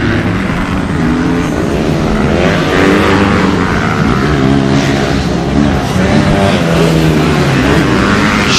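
Racing motorcycle engines revving on a dirt track, several at once, their pitch rising and falling as the riders work the throttles.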